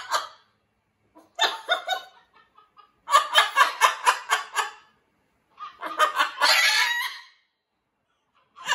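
A parrot calling in quick runs of repeated pitched notes, about six a second, in three bursts separated by short pauses.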